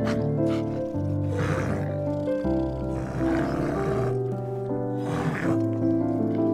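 Calm background music of sustained notes with a bear's rough growling roars laid over it, three times: about a second in, around the middle, and near the end.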